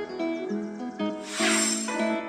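Instrumental background music of plucked notes, with a short loud hissing whoosh swelling and fading about halfway through.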